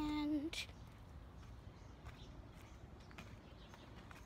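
A child's drawn-out "and" lasting about half a second, then a short burst of noise. After that only a faint background remains, with a few soft, irregular knocks.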